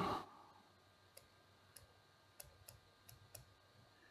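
A handful of faint, short clicks over near silence: a stylus tapping on a pen tablet while handwriting.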